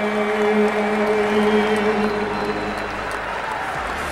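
A solo male singer holds the long final note of a song into a microphone. The note fades out a little over halfway in as a stadium crowd applauds and cheers.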